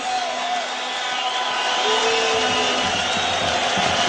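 Steady crowd noise from the stands of a football stadium, heard through the TV broadcast, with a faint wavering high whistle and a short held call from the crowd about two seconds in.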